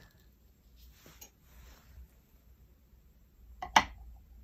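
Faint rustles of a calligraphy brush on paper, then near the end two sharp clacks close together as the bamboo-handled brush is set down on the inkstone.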